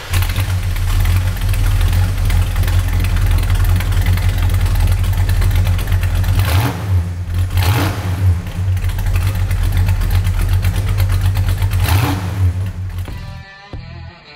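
The 1966 Dodge Charger's 383 V8, rebuilt with a roller camshaft, idles with a loud, low rumble from its tailpipes. The throttle is blipped briefly twice about halfway through and once more near the end, and the engine sound fades out just before the end.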